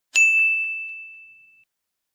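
A single bright ding, a bell-like chime struck once just after the start and ringing away over about a second and a half, with two faint taps soon after the strike.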